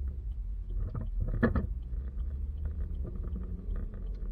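Car driving, a steady low rumble of engine and road noise picked up by a dash-mounted camera, with a brief louder knock about a second and a half in. Faint ticks repeat about twice a second throughout.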